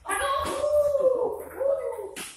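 Loud, drawn-out high-pitched vocal cries: one long cry of about a second, then two short ones.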